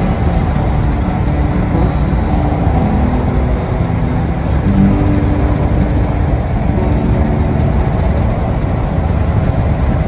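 Steady road noise inside a moving car's cabin: the low rumble of tyres and engine, with a faint engine hum.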